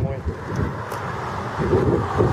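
Wind noise buffeting the microphone with a steady outdoor hiss and low rumble, under a man's voice at the start and near the end.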